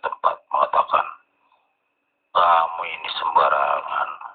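A voice in narrow, radio-like sound: a few short bursts in the first second, a pause of about a second, then a longer run of voicing.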